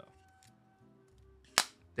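A single sharp pop about one and a half seconds in, as a cigar's presentation box comes open. Faint background music plays underneath.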